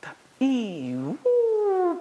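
Two long wordless vocal calls from a breath-and-voice exercise. The first swoops down in pitch and back up; the second is higher, held, and slowly sinks.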